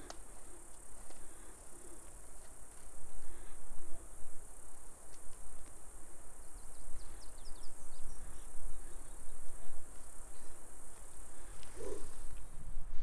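Steady high-pitched drone of insects, crickets or the like, with a few short high chirps about seven seconds in.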